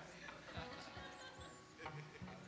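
Soft, sustained background keyboard music with a few low thuds of footsteps on the stage.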